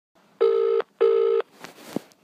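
British telephone ringback tone heard down the line by the caller: one double ring, two short steady buzzes with a brief gap between them, as the number rings. A sharp click follows near the end.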